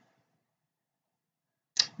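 Near silence, the audio cut to nothing, broken near the end by one short sharp sound just before a woman's voice starts.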